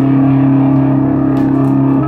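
Electric guitar through a Bogner Überschall amp on a distorted setting, one chord held and sustaining steadily without fading.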